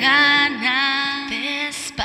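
A female voice sings a long held note, then a shorter phrase that rises in pitch, over a thin backing with the bass and drums dropped out: the breakdown between verse and chorus of a pop song.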